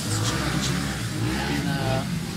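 Dirt bike engine revving, its pitch rising and falling, over a steady low hum.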